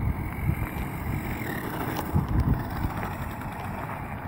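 Wind buffeting the microphone, with the faint whine of an electric RC buggy's 2250 kV brushless motor as it drives in over gravel. The whine rises slightly during the first second and a half.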